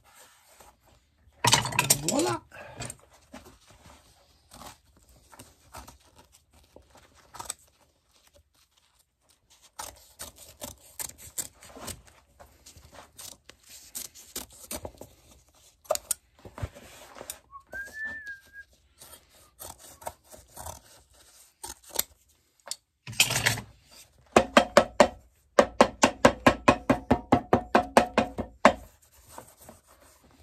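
A hammer strikes a boot held on an iron shoemaker's last, in a fast, even run of about four ringing blows a second for some five seconds near the end. Before that come scattered small cutting, scraping and clicking sounds of a knife trimming canvas on the insole and pliers working at the sole.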